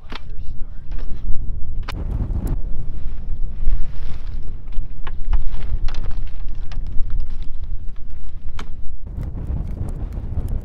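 Wind buffeting the microphone, with a string of sharp clicks and knocks as a fold-out rooftop tent is flipped open and its telescoping aluminium ladder is extended.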